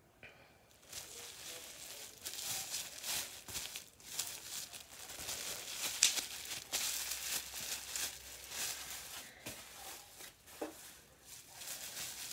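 Packaging crinkling and rustling as hands rummage through a box: an irregular run of crackles that starts about a second in, with one sharper crackle midway.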